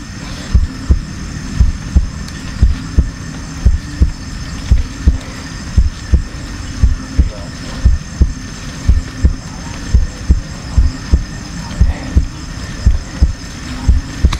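Heartbeat sound effect: steady low thumps about two a second, some in lub-dub pairs, over a steady high trill.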